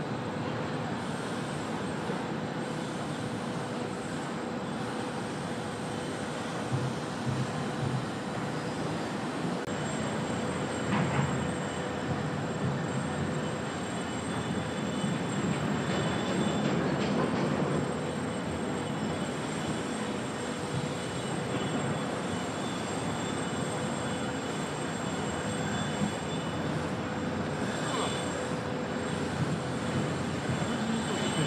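Steady background rumble of distant traffic, with a faint steady hum underneath.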